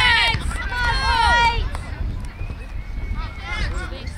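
High-pitched voices shouting and calling out across a soccer field, loudest in the first second and a half with more calls a little after three seconds, over a steady low rumble of wind on the microphone.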